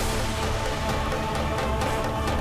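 Background music with sustained notes over a steady, evenly spaced beat.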